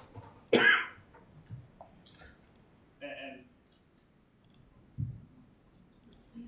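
A person's single short cough about half a second in, followed by a brief murmur of voice around three seconds, a low bump and a few faint clicks.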